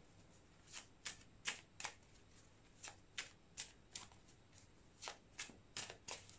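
A deck of tarot cards shuffled by hand: faint, short card clicks at an uneven pace, roughly two a second.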